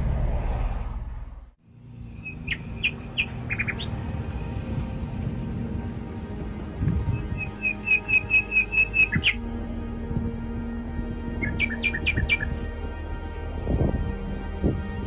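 Road noise fades out in the first second and a half. Then songbird chirps come over a bed of calm, sustained background music: a few short chirps, then a run of about ten quick, evenly spaced notes near the middle, and another short cluster near the end.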